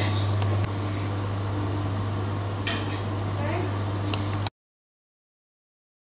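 Chocolate tempering machine running with a steady low hum, joined by faint clinks and distant murmuring. The hum steps down slightly under a second in, and all sound cuts off abruptly about four and a half seconds in.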